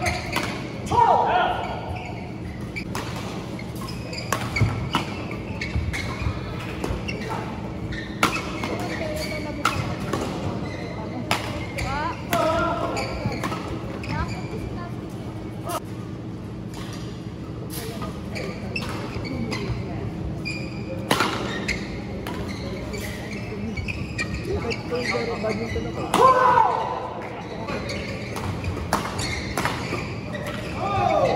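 Badminton rally: rackets striking the shuttlecock in a run of sharp clicks, with footwork on the court and voices, ringing in a large hall over a steady low hum.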